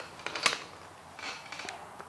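A pair of hand cutters set down on a concrete floor among small plastic fittings: a few sharp clicks and clacks, the loudest about half a second in, then a softer rattle.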